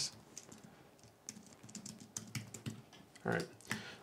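Typing on a computer keyboard: a quick run of light key clicks, starting about a second in and lasting about two seconds.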